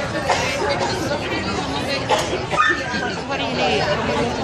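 Indistinct chatter of several people talking at once close by, with no clear words.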